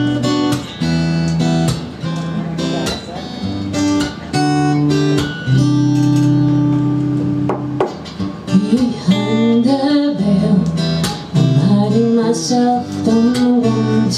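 Acoustic guitar playing the slow chord intro of a folk/Americana song, chords ringing and changing every second or two. About eight seconds in, a woman's voice begins singing over the guitar.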